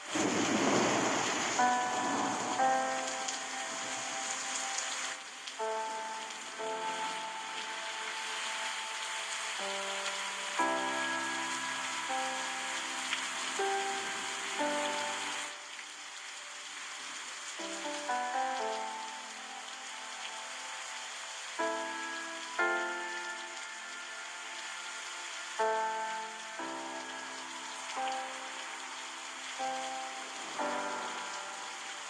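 Steady rushing water with a slow, gentle instrumental melody of held notes over it. The hiss of the water grows thinner about halfway through.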